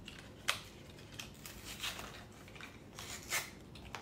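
Hands handling LEGO packaging, a small white cardboard box among plastic parts bags: light rustling and crinkling, with a sharp click about half a second in and a louder rustle a little after three seconds.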